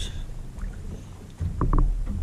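Low rumble of handling and movement in a small fishing boat on the water, louder in the last half second, with two short faint pips about one and a half seconds in.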